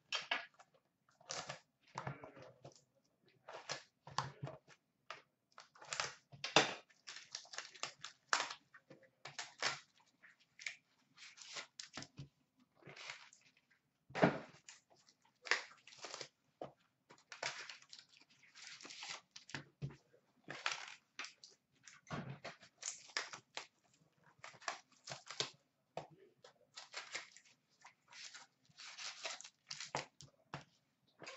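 Upper Deck Trilogy hockey card boxes being unwrapped and opened by hand, with irregular crinkling and tearing of wrapping and the rustle and scrape of cardboard and packs being handled.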